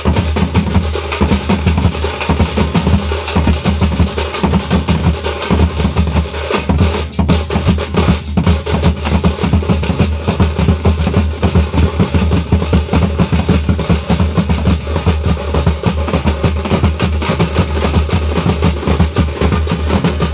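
A thappu (parai) drum band beating frame drums in a fast, dense, loud rhythm, stroke after stroke with no pause.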